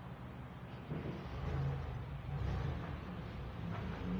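City street traffic: a passing motor vehicle's low engine rumble swells about a second in and fades near the end.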